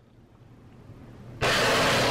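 A sudden steady rush of noise that starts about one and a half seconds in and lasts about half a second, after a faint quiet stretch.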